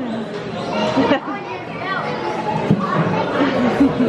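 Chatter of several voices talking over one another in a busy restaurant dining room, children's voices among them.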